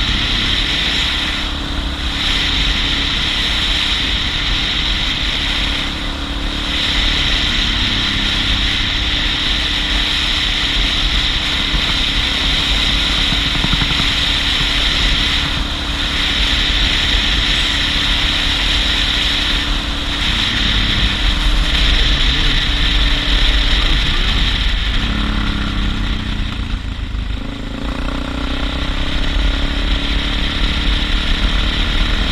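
Suzuki DR650 single-cylinder engine running steadily under way on a gravel road, with wind and tyre noise. Near the end the engine note shifts and drops briefly, then picks up again.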